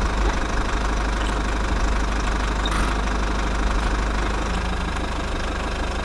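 Battery-powered toy excavator's small electric motor and plastic gearbox running steadily.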